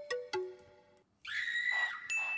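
A short plucked melody: three ringing notes that fade out, ending about a second in. After a brief gap a stream donation alert sound starts, a held high tone over a hiss.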